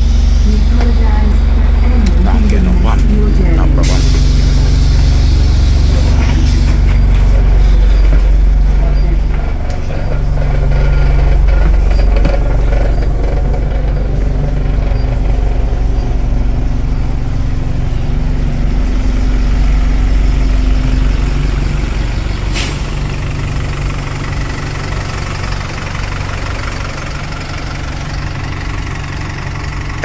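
Diesel bus engine idling with a steady low drone, with a long hiss of compressed air about four seconds in and a short sharp air hiss about 22 seconds in.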